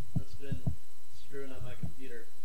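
Quiet talking in a small room, with three dull low thumps in the first second.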